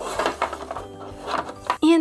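Background music with light plastic clicks and clatter from an embroidery hoop being handled as fabric is fitted into it.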